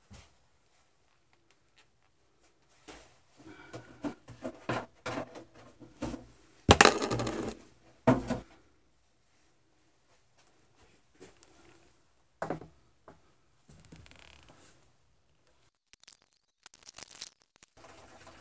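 Irregular knocks, rustles and clicks of a clear plastic siphon hose and a plastic gas can being handled while a gasoline siphon is being started, with a louder rushing noise about seven seconds in.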